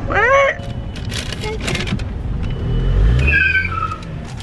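Car running, heard from inside the cabin, its low engine note swelling and rising about three seconds in as the car turns, with short vocal yelps over it.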